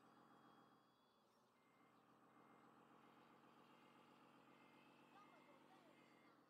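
Faint sound effects from a remote-control wheel loader's sound module: a steady engine-like hum, with a reversing beeper starting about a second and a half in and sounding in short, even beeps, a little over one a second.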